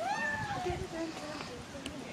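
A woman's drawn-out, high-pitched squeal, rising and then falling over most of a second, followed by a few short, quieter bits of voice.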